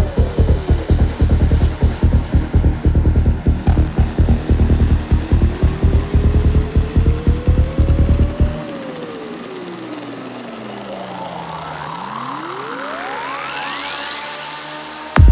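Goa trance music: a driving kick drum and rolling bassline under a synth line that glides in pitch. About eight and a half seconds in, the kick and bass drop out for a breakdown, in which a synth sweep falls in pitch and then rises steeply as a build-up.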